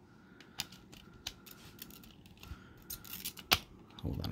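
Plastic clicks and ticks of a CD being worked on and off the centre hub of a clear plastic jewel case. The loudest is one sharp snap about three and a half seconds in.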